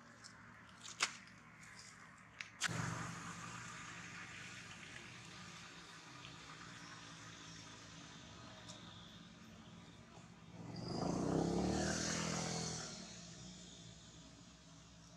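A few sharp clicks in the first three seconds, then a low steady rumble with a motor-like swell about ten seconds in that fades away two seconds later, as of an engine passing by.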